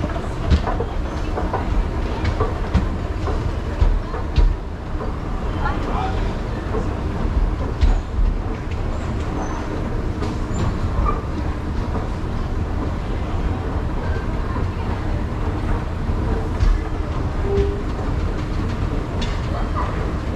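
Escalator running: a steady low rumble with light scattered clicks from the moving steps, under faint voices of people around.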